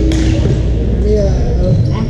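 A sharp badminton racket strike on a shuttlecock just after the start, ringing out in a large gym hall, with high thin squeaks later on and voices behind.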